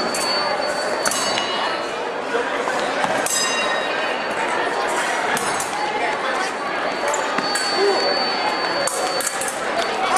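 Voices of a crowd in a large hall, with scattered short metallic clinks typical of fencing blades touching.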